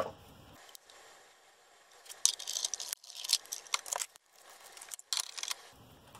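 Hands handling cardstock and a die on a plastic die-cutting platform: a few short paper rustles and light taps around two seconds in and again about five seconds in, otherwise faint.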